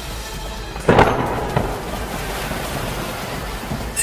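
Animated-series soundtrack: music with a sudden loud boom about a second in, which trails off into a long rumbling noise under the music.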